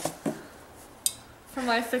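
A ceramic mug being taken out of a cardboard gift box, with one brief high clink about a second in. A woman starts speaking near the end.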